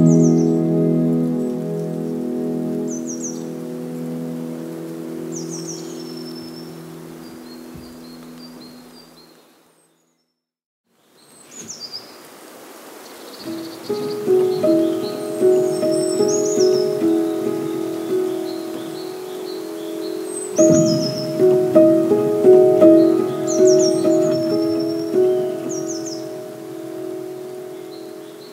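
Calm background music of held notes, with birdsong chirps mixed into it. It fades out to silence about ten seconds in, then another calm piece with birdsong starts and builds up.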